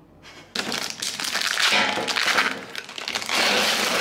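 Loud rustling and crackling handling noise close to the microphone, in two long stretches with a short dip between them.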